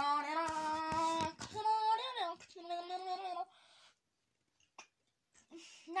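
A child's voice singing three long held notes, the middle one wavering, then stopping about three and a half seconds in.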